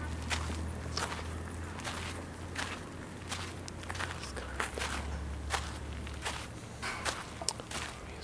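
Footsteps of someone walking on a garden path, irregular short steps over a steady low hum.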